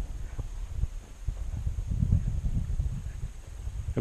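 Outdoor ambience on an open grass prairie: an uneven low rumble of wind and handling on the microphone, with soft rustling, while the walker carries the camera along a mown grass path.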